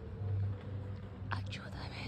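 Faint whispered voices over a low steady hum, with a few short sharp sounds about one and a half seconds in.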